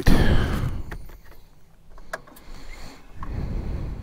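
Harley-Davidson Street Glide's V-twin engine being started: a loud burst of engine noise right at the start that dies down within about a second. A few sharp clicks follow, then a lower rumble near the end.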